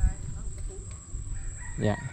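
A rooster crowing near the end, over low thuds of footsteps on soft mud, with a loud thump at the start.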